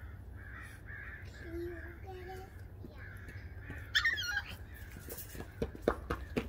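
French bulldog puppy yapping in a high pitch: soft, repeated yaps, then one loud sharp yap about four seconds in.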